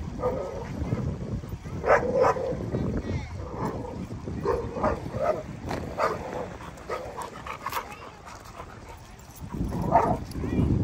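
Dogs barking and yipping in short, scattered bursts, the loudest about two seconds in, over a low steady rumble.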